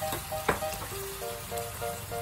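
Background music of short, repeated notes over the steady sizzle of pork chops cooking in sauce in a pan, with one sharp click about a quarter of the way in.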